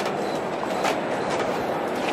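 Steady rolling noise of a busy airport terminal hall, with a few faint clicks and no voices standing out.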